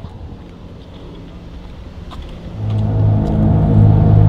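A low rumbling noise, then about two and a half seconds in a loud, deep, steady drone swells up and holds at one pitch.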